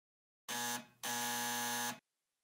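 Electric doorbell buzzer pressed twice: a short buzz, then after a brief gap a longer, steady buzz of about a second.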